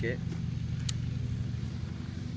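Honda ATC 250SX three-wheeler's single-cylinder four-stroke engine idling steadily.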